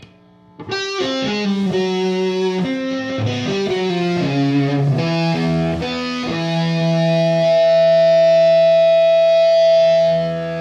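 Electric guitar played live: after a brief near-silent break, a quick run of single notes, then one long held note that sustains to the end.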